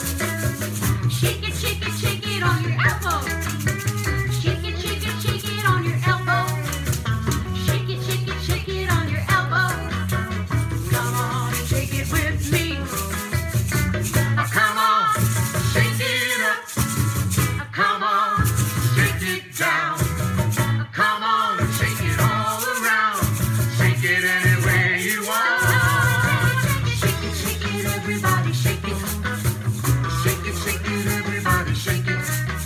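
Two small plastic bottle shakers rattling in rapid rhythm along with an upbeat children's song.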